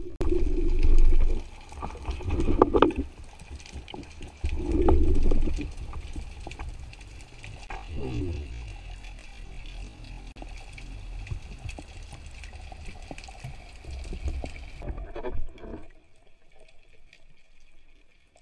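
Muffled underwater sound of a spearfishing dive, picked up by a camera in a waterproof housing: a low rush of water against the housing with three louder surges in the first few seconds and scattered knocks. The sound drops away sharply near the end.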